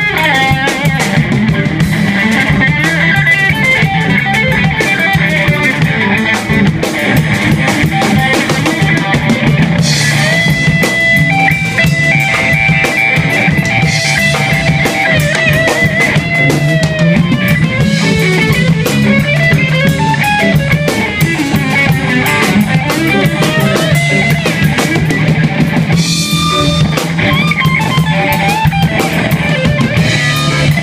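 Live blues band playing an instrumental passage: semi-hollow electric guitar playing lead lines with bent notes over a steady drum kit and low accompaniment.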